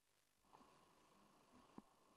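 Near silence: dead air for about half a second, then a very faint background hiss with a faint click near the end.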